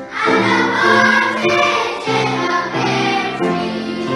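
A children's choir singing together, a class of schoolchildren performing a song in unison.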